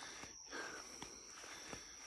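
Quiet outdoor background in a pause: a steady high-pitched insect trill, with a few faint clicks.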